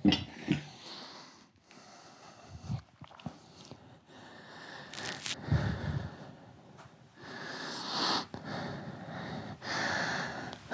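A man breathing hard after a set of swings with a heavy weight belt, with a few short sharp sounds in the first second and a long drawn-out breath near the end.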